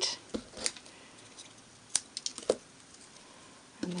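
A few scattered light clicks and soft rustles of paper cardstock strips and scissors being handled, with quiet room tone between them.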